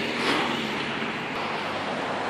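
Steady noise of road traffic, swelling slightly a little way in.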